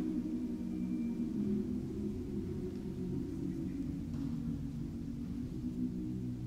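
Chamber choir singing soft, low sustained chords that shift slowly from one to the next.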